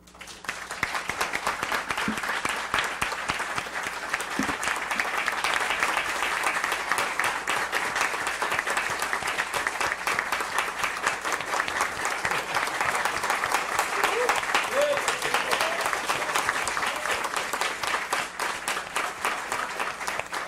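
Sustained applause from an audience and panel, a dense patter of many hands clapping that starts suddenly and holds steady, easing slightly near the end.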